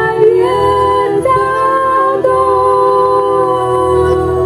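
Voices singing a slow worship song in long held notes, stepping from pitch to pitch about once a second, over a low, quiet accompaniment.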